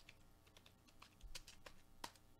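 Faint computer-keyboard typing: irregular, separate key clicks, bunched in the second second.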